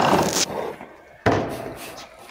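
Cordless drill running in a short burst that stops about half a second in, followed about a second later by a single sharp knock.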